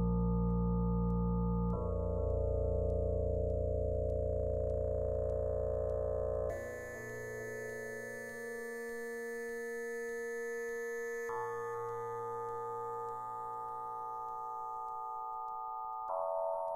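Eurorack modular synthesizer patch built around an E352 Cloud Terrarium wavetable oscillator, playing slow sustained chords that change three times. The deep bass drops out about six and a half seconds in, leaving higher held tones.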